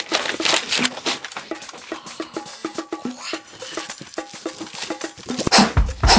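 Background music with short, plucked-sounding notes, over rustling of crumpled kraft packing paper being pulled out of a cardboard box. A heavy bass beat comes in near the end.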